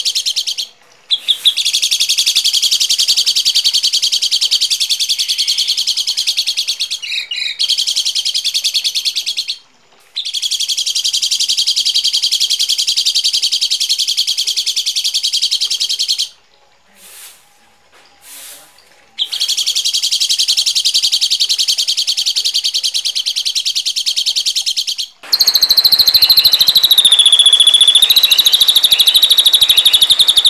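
Recorded songbird calls: harsh, very rapid buzzing trills in long bursts of several seconds with short breaks between them. About 25 seconds in a louder, different call takes over, with a held high whistle that dips and comes back.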